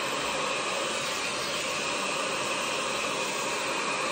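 Hot-air multi-styler with an air-curling barrel attachment running, a steady whoosh of its fan blowing air at a constant level.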